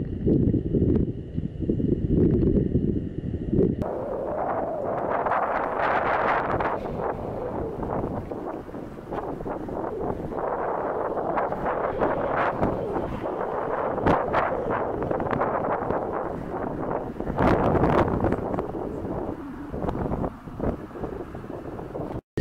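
A train passing close by: a steady rumble and clatter of wheels on rails that sets in about four seconds in and carries on to the end, loud enough to drown out everything else. Before it, wind gusts buffet the microphone.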